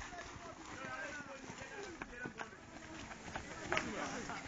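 Faint, distant voices of a group calling out while a team jogs on dry dirt, with a few scattered footfalls.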